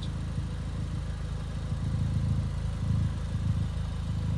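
Ford Fiesta ST's turbocharged four-cylinder engine idling steadily through an aftermarket Scorpion exhaust, a low even burble.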